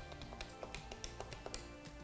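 Soft background music with a quick series of light plastic clicks as number keys are pressed on a Polycom desk phone's keypad.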